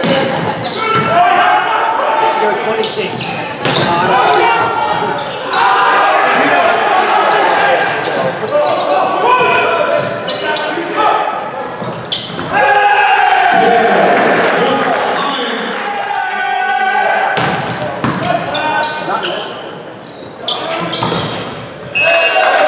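Volleyball being played in a large, echoing gym: sharp smacks of the ball being hit by hands and striking the floor, several times through the rally, under continual shouting from players and spectators.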